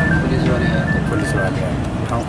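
A simple high-pitched electronic tune of a few stepping notes, over a steady low rumble of street traffic and faint voices in the background.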